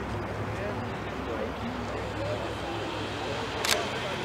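Faint, indistinct voices over a steady low hum, with one short click near the end.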